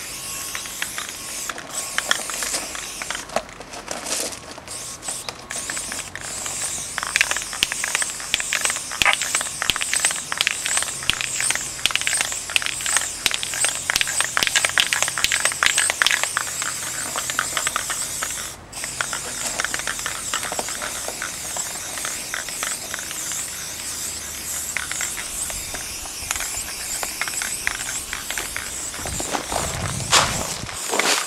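Fat-capped aerosol spray paint can hissing in long, near-continuous bursts, with many fine clicks in the hiss. The hiss breaks off briefly about two-thirds of the way through.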